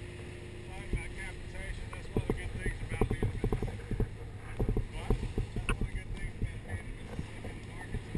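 Irregular knocks and bumps of footsteps and scuba gear on a dive boat's deck, starting about two seconds in, over a low steady hum and faint voices.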